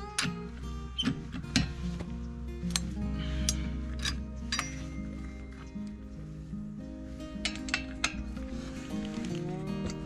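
Background music throughout, with sharp metallic clinks at irregular intervals. The clinks come from a steel four-way cross lug wrench knocking against the wheel nuts as it is fitted and turned.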